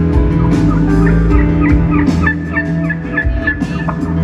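A live country band playing a turkey-gobble imitation: from about a second in, a rapid run of short, falling warbled notes, about four a second, over the band's sustained low chord.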